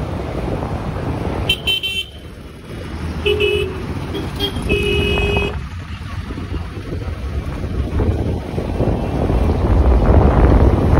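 A vehicle horn honks three times in the middle, short blasts with the last one longest. Underneath is a steady rumble of traffic and wind from riding a two-wheeler, swelling near the end.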